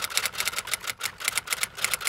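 Typing sound effect: a fast run of keystroke clicks, about seven a second, as text types out on screen.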